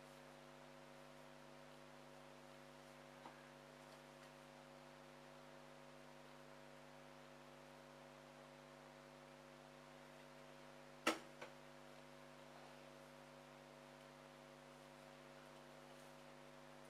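Near silence: a steady electrical hum, with one short click and a fainter one just after it about eleven seconds in.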